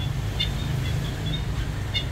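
A few short, high bird chirps, about half a second in and again at the very end, over a steady low rumble.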